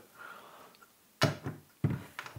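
A metal Pearl Eliminator kick drum pedal being handled on a wooden tabletop: a faint rustle as it is lifted, then two sharp knocks a little over half a second apart as it is set down and turned over.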